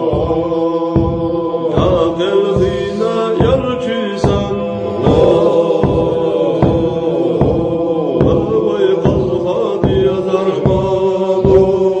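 Chanted vocal music: sustained voices over a steady beat of about three beats every two seconds.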